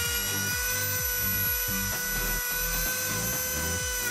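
Dremel rotary tool running at a steady high whine, its cutting wheel trimming the end off a plastic toilet-paper holder roller.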